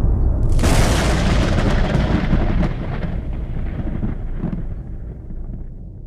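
A thunderclap sound effect: a sudden crack about half a second in, over a deep rumble that slowly dies away.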